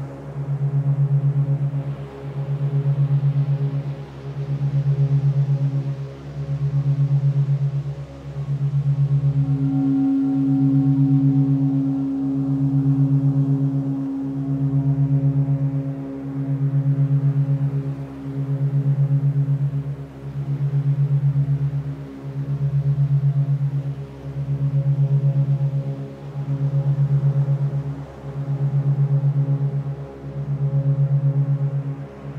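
Electronic meditation drone built on a low 136.1 Hz tone with 8 Hz monaural beats, heard as a fast pulsing throb that swells and fades about every two seconds over faint held higher tones. A brighter sustained tone comes in about ten seconds in and fades out around eighteen seconds.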